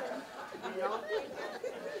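Low chatter of several voices talking in a large hall, with no one speaking into the microphone.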